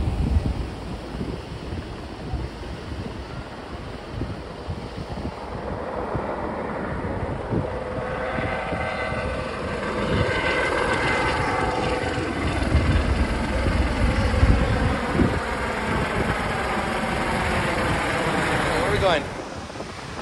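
Helicopter flying low overhead as it comes in to land. Its engine and rotor sound grows louder about halfway through, with a whine that bends in pitch as it passes, over wind buffeting the microphone. The sound drops off suddenly near the end.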